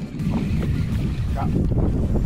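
Wind buffeting the microphone: a loud, ragged low rumble that sets in suddenly and holds steady.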